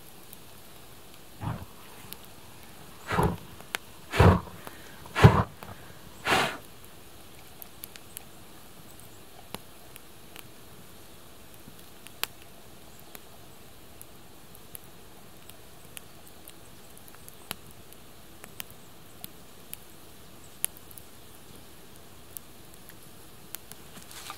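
Wood campfire crackling with scattered sharp pops, after five short louder noises in the first six seconds, the loudest about five seconds in.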